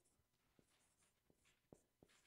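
Dry-erase marker faintly squeaking and scratching across a whiteboard as letters are written, with a few soft knocks, the loudest near the end.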